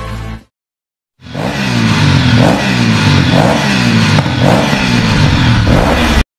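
Motorcycle engine revved over and over, beginning about a second in, each rev rising in pitch, roughly once a second.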